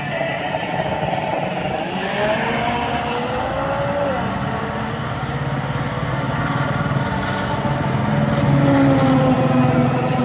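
Car engines running in a busy lot, one changing pitch as it revs up and down; near the end an engine grows louder as a car pulls close.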